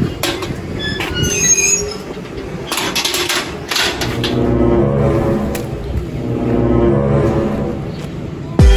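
Metal barred shop door squealing on its hinges and clattering as it is pushed shut, followed by a steady low drone.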